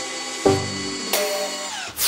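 Background music, with a power drill whining as it drives a screw into the wooden frame of a workbench. The whine drops in pitch and stops near the end.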